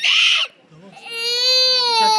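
Young child crying hard: a short loud wail, a brief catch of breath, then a long drawn-out wailing cry starting about a second in.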